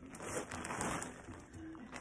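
Black compostable mailer bag crinkling and rustling as it is handled and opened.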